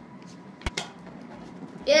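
Faint handling of a rubber balloon being stretched over the mouth of a plastic bottle, with one sharp knock about two-thirds of a second in as it goes on. An excited voice starts near the end.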